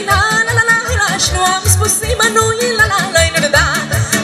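Live Romanian folk music from a small band, amplified through stage speakers, with a steady pulsing bass beat under a wavering, vibrato-laden melody.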